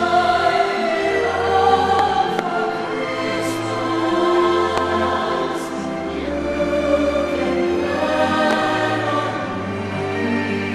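Fireworks-show soundtrack: a choir singing long held chords, heard over the show's outdoor loudspeakers.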